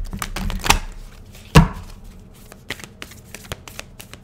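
Moonology oracle deck being shuffled by hand: a run of quick card clicks and snaps, with a louder knock about a second and a half in.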